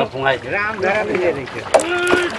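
People talking, with a short sharp click near the end.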